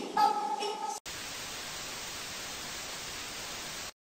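A last pitched phrase of music breaks off about a second in, and steady static hiss, like white noise, takes over at an even level and cuts off abruptly just before the end.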